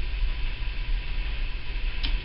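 Steady low hum and hiss of background room noise, with no distinct events.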